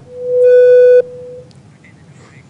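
A single loud electronic beep on a telephone line, one steady buzzy tone that swells in, holds, drops sharply about a second in and trails off faintly, as a phone-in caller is put through.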